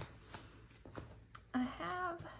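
Paper pages of a sticker book being leafed through: a few light papery flicks and rustles. A woman's voice starts near the end.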